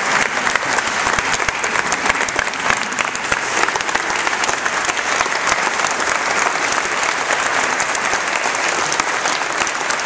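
A congregation applauding in a church: sustained, dense clapping from many people standing in the pews, steady throughout.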